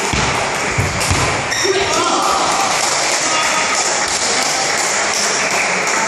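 Table tennis ball struck back and forth by paddles and bouncing on the table, a few sharp clicks in the first second, then spectators talking in a large, echoing hall.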